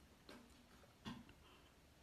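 Near silence: room tone, with two faint short sounds, about a third of a second and about a second in.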